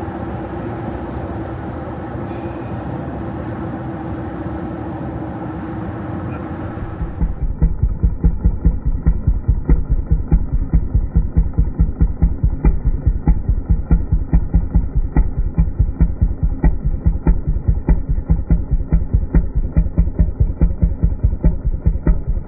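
Steady road and engine noise inside a moving truck cab. About seven seconds in, it gives way abruptly to a muffled, steady rhythmic thumping of about four to five beats a second, which runs on to the end.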